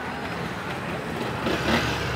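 Street traffic: a steady hum of passing motorbike and vehicle engines.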